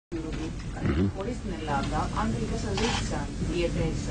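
Speech: a person talking, with a brief hiss shortly before the three-second mark.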